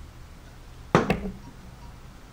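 Sharp knock about a second in, with a smaller knock right after: a cast iron kitchen chopper being set down.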